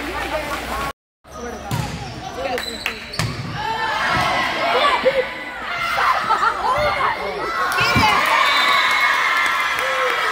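Indoor volleyball rally in a gym: several sharp hits of the ball, sneakers squeaking on the court floor, and players and spectators calling out and cheering, the voices swelling as the point ends. The sound cuts out briefly about a second in.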